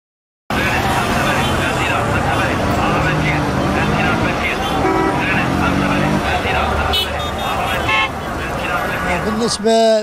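Busy city street ambience: traffic and crowd chatter, with car horns tooting now and then. It starts abruptly about half a second in.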